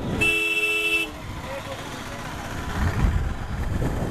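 A vehicle horn sounds once, steady for about a second, in city traffic. It is followed by the low running, road and wind noise of a Royal Enfield Continental GT 650 motorcycle on the move, swelling briefly a little after the middle.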